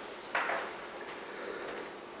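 A brief handling noise at the lectern, a short knock or rustle about a third of a second in that fades quickly, followed by faint room tone.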